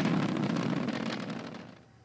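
SpaceX Falcon 9 rocket climbing after liftoff: a low, crackling engine rumble that fades out near the end.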